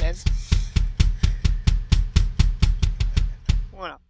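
Bass drum pedal beating the kick of a Roland electronic drum kit in a fast, even run of about five strokes a second, played heel-up.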